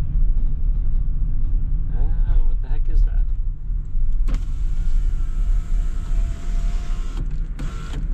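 Low engine and road rumble from inside a slowly moving vehicle; about four seconds in, the passenger-side power window motor runs for about three seconds with a faint steady whine as the glass lowers, then stops, followed by a short burst of noise near the end.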